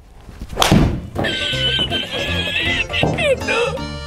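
A golf club strikes the ball with one sharp, loud hit a little over half a second in, a shot that goes wrong: a shank. Right after it, comedy music starts up with a wavering high sound effect and falling notes.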